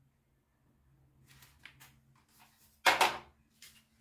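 Faint rustling and small clicks, then a sharp knock about three seconds in that rings briefly in a small tiled room, and a lighter knock just before the end.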